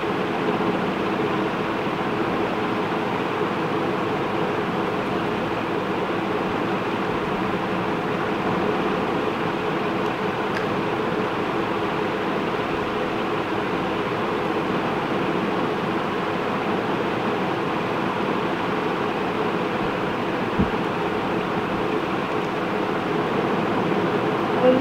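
Steady mechanical hum and hiss with a few faint steady tones, unchanging throughout, with one soft low bump about twenty seconds in.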